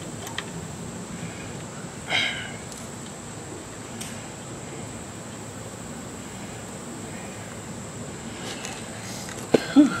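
Low steady outdoor background with a few faint clicks as hands work on a push lawn mower's engine, a short breathy sound about two seconds in, and a man coughing near the end.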